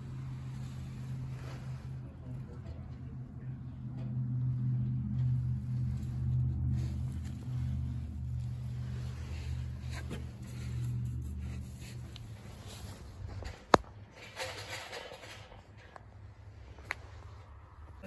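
A low, steady motor hum, louder in the middle, that dies away about two-thirds of the way through, followed by a single sharp click and a softer one near the end.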